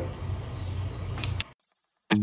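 A steady low machine hum with a couple of light clicks, cutting off abruptly about one and a half seconds in, followed by silence.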